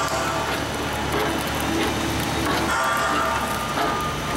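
Vincent CP-4 screw press running: its motor and gearbox give a steady mechanical noise with a couple of faint steady whining tones as the screw pushes wet polymer out of the discharge.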